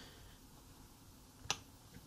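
A single sharp click about one and a half seconds in, the click that advances the presentation slide, over faint room tone.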